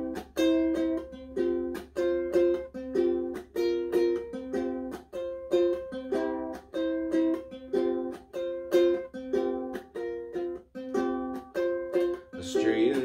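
Ukulele strummed solo in an instrumental break, an even rhythm of chords repeating through the passage.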